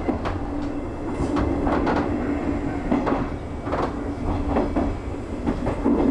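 JR 201 series electric train running over rail joints and pointwork, heard from the cab. Irregular wheel clacks come over a steady low hum.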